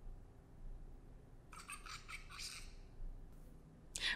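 Faint, high, chattering electronic sound effect from the Ozobot robot's tiny built-in speaker, about a second long, starting a second and a half in.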